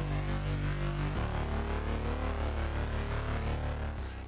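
Thick synth drone chord sustaining, with its stereo width spread by heavy limiting on the side signal (mid-side limiting). The low notes of the chord change about a second in.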